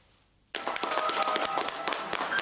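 Applause, a dense patter of hand claps that cuts in suddenly about half a second in after a brief near-silence.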